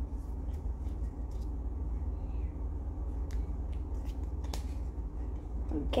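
Pokémon trading cards being shifted and slid between the fingers, giving a few faint flicks and ticks over a steady low hum.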